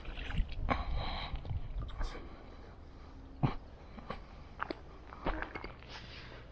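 Water splashing as a trout is lifted out of the lake in a landing net, over the first two seconds; later come a few short, sharp knocks as the net is handled on the bank.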